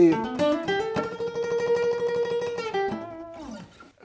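Acoustic guitar phrase: a quick rising run of notes up to a long held high note, then falling back down and fading out.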